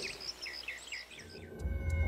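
A bird calling a quick run of short, falling chirps, about five in a second and a half. About one and a half seconds in, a low music drone with steady ringing tones comes in.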